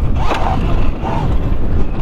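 Altis electric dirt bike ridden over a dirt motocross track: a steady rush of wind on the microphone with tyre and chassis noise.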